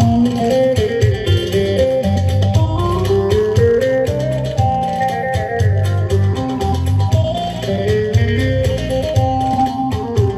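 Loud Turkish folk dance music, a Kütahya oyun havası: a wandering melody line over a heavy, steady low beat.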